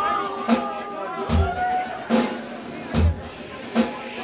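A rock band playing live: a drum kit with repeated kick drum beats under guitar and bass.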